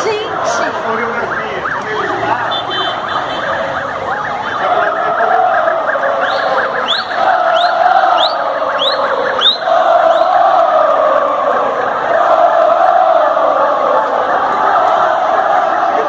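A large crowd of football fans chanting together in long, wavering phrases. Near the middle comes a quick run of short rising whistle-like notes, about two a second.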